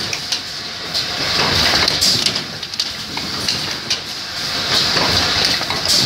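Automatic lighter assembly machine running: a steady high hiss with scattered clicks and clatter from its air-driven press and feed track, swelling and easing about every three seconds as it cycles.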